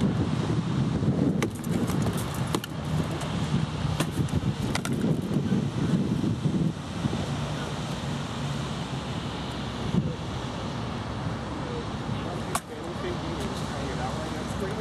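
Rattan sword blows in SCA armoured combat striking shields and armour: several sharp cracks in the first five seconds and one more near the end, over a low steady rumble.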